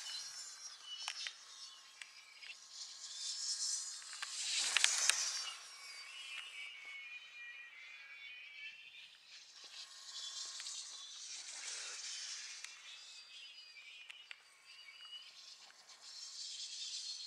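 Radio-controlled dynamic-soaring gliders passing at speed: airy whooshes that swell and fade, about five seconds in and again near eleven seconds, with a faint high chirping underneath.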